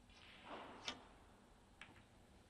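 Snooker cue tip striking the cue ball with one sharp click, followed about a second later by a weaker click as the cue ball strikes a red. A short burst of soft noise comes just before the strike.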